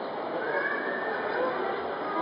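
A cavalry horse whinnying: one high call starting about half a second in and lasting about a second, over the murmur of a crowd.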